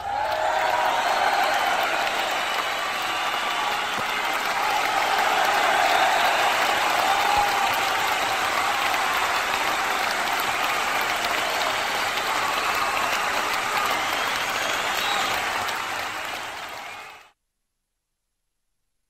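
Audience applauding: dense, steady clapping that starts abruptly, fades and stops shortly before the end.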